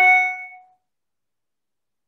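A single bell-like ding, struck once, that rings out and dies away within about a second.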